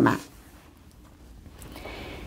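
A woman's speech trails off at the start, then a quiet pause holds only faint, even room noise.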